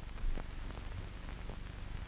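Steady hiss and low hum of a 1930s film soundtrack, with a few faint clicks.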